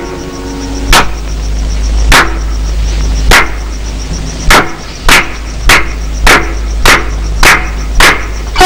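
Sharp percussion strikes in a film-song interlude: four about a second apart, then five more at twice the pace, over a low steady hum.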